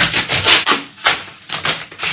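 Corrugated cardboard delivery packet being ripped open by hand, in about three rough tearing strokes, the longest and loudest in the first second.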